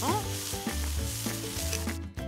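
Cartoon sound effect of a drinking fountain spraying a high jet of water: a steady hiss that cuts off suddenly at the end.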